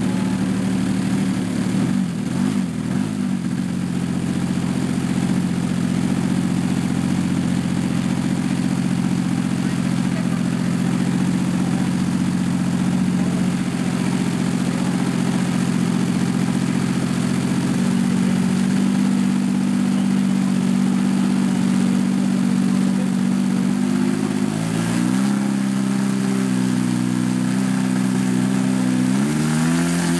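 Engine of a large-scale Extra 330SC model aerobatic plane idling steadily on the ground, its pitch stepping up slightly about two-thirds of the way through and rising in short blips of throttle near the end.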